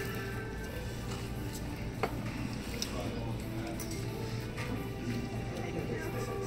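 Background music with steady held notes, and a couple of faint clicks and rustles from a gift bag being opened, about two seconds in and again a little later.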